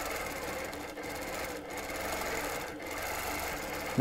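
Stand-up longarm quilting machine stitching steadily as it runs through a line of quilting.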